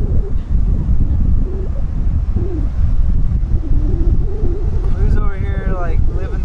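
Wind buffeting the microphone, a steady low rumble, with a voice heard briefly near the end.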